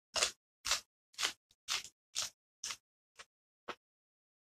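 Crisp raw vegetable being chewed with the mouth open, a sharp crunch about twice a second that gets fainter near the end.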